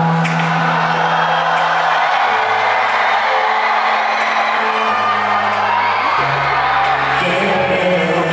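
Live concert performance of a pop song over the hall's sound system, with a male singer's voice and the crowd cheering.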